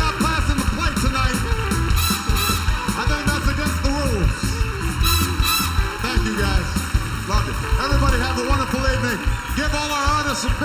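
Live band playing an upbeat groove with drums and bass, the audience clapping along.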